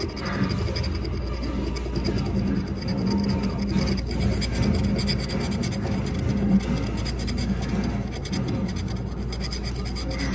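Scratch-off lottery ticket being scratched, a continuous rapid scraping as the coating is rubbed off the card.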